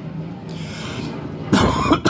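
Steady hiss of heavy rain, then a man coughs loudly about one and a half seconds in.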